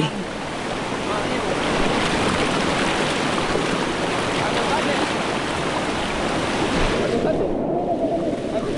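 Swollen, muddy river rapids rushing loudly and steadily around people wading in the current. Near the end the sound briefly goes dull and muffled.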